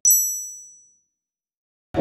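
A single high, bright ding sound effect, struck once and fading away within about a second, followed by dead silence.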